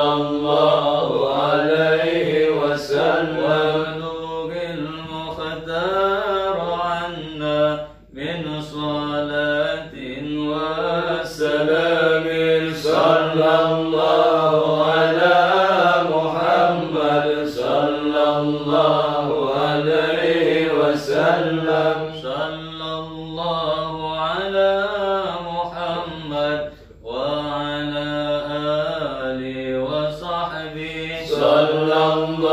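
Men's voices chanting an Arabic sholawat in slow melodic phrases, without instruments. There are short breaks for breath about eight seconds in and again near the end.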